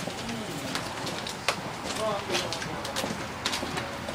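Footsteps clicking irregularly on a concrete walkway as two people walk, with a few brief low voice-like sounds in the background.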